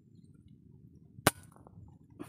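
A single sharp rifle shot about a second in, the shot a miss.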